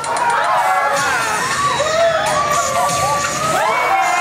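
Several riders screaming and yelling together at once in a drop-tower elevator ride car, many voices overlapping without a break.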